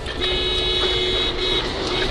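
A car horn blaring a warning for about a second and a half, with a brief break near the end, over highway road noise.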